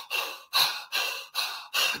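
A man breathing fast and hard, short breaths in and out at about two a second: rapid diaphragmatic breathing of the kind used when coming out of a hard round of fighting.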